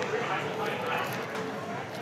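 Background chatter of several people talking indistinctly, with general street noise.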